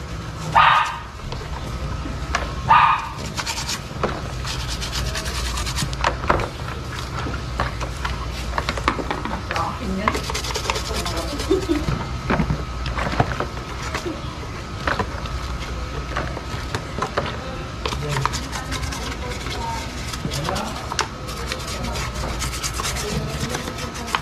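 A toothbrush scrubbing the soapy plastic shell of a KYT motorcycle helmet in quick short strokes, working dust out of its vents and seams. Two short loud cries break in about one and three seconds in.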